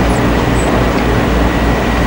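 Steady low rumble and hiss of a lecture hall's background noise.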